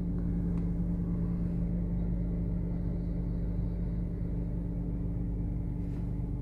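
A car's engine and road noise heard from inside the cabin while driving slowly: a steady low hum with a constant drone.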